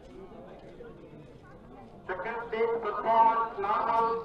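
Speech only: a faint murmur of background voices, then from about halfway a clear voice speaking loudly.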